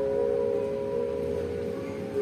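Macapat singing (Javanese sung poetry): a singer holds one long, steady note at the end of a phrase.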